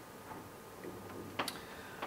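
Quiet room tone with low hum and hiss, and one short sharp click about one and a half seconds in.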